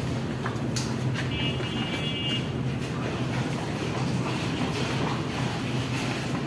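Steady low hum and rushing noise of electric ceiling fans running in a cattle shed, with a couple of sharp clicks and a brief high whistling tone between about one and two seconds in.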